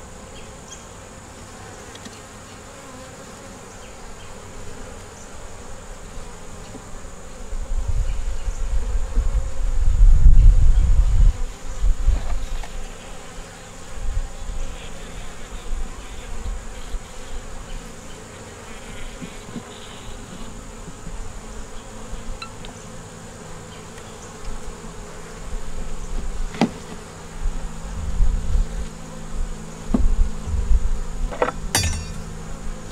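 Honeybees buzzing around an open nuc hive, a steady hum, as wooden frames are handled. A loud low rumble swells and fades between about 7 and 12 seconds in, and a single sharp knock comes near the end.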